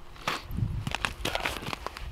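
Boots crunching and scuffing on snow-covered ice, with rustling as gear is handled: a run of irregular crunches and scrapes.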